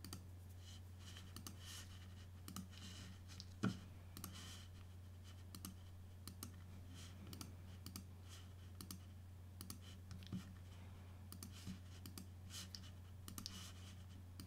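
Faint computer mouse clicks, scattered every second or so, with one louder click about three and a half seconds in, over a steady low hum.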